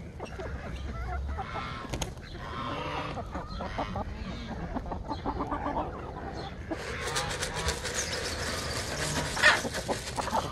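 A flock of chickens clucking with many short overlapping calls. From about seven seconds in, a dry rustling of straw underfoot joins them.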